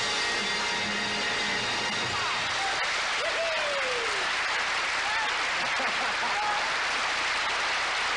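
Studio audience applauding as the orchestra's final held chord dies away in the first two or three seconds, with a few cheers rising over the applause.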